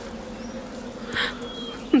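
A steady low buzzing hum, with a brief soft noise about a second in.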